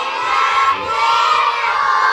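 A roomful of schoolchildren shouting and cheering together in one long, loud cheer.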